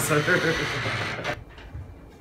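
A man's voice speaking briefly in a small room, then a sudden drop to low, quiet room noise about a second and a half in.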